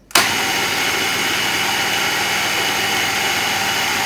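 Small electric food processor switched on, its motor running steadily as the blade grinds soaked moong dal with spices and a little water into a coarse paste. The motor starts suddenly a fraction of a second in.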